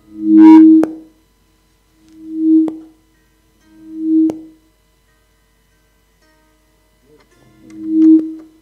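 A musical instrument sounding the same low note four times, each note swelling up and dying away within about a second, with a sharp click near the peak of each. The same note repeated on its own like this is an instrument being level-checked.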